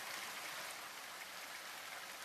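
Faint, steady water-like hiss that does not rise or fall.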